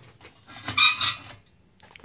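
Metal wheel trim rings clanking and scraping against each other as one is pulled from a stack, with a short metallic ring about a second in.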